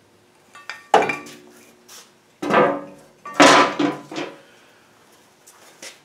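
Several metal clanks, each ringing briefly, the loudest about three seconds in: a cast-iron Dana 60 brake anchor and a brake pad knocking together and being set down.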